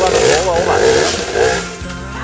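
Enduro motorcycle engine running beneath a loud wavering voice that rises and falls in pitch, shouting or yelling rather than speaking words. Both are loudest in the first second and a half, then ease off near the end.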